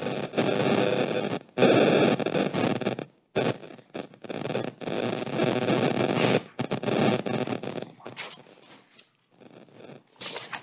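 Loud static-like rustling noise in long bursts, broken by short gaps about one and a half, three, and six and a half seconds in, fading away about eight seconds in.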